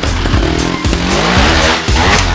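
Trials motorcycle engine revving up and down several times as the bike is ridden over obstacles, with wind noise on the microphone and background music underneath.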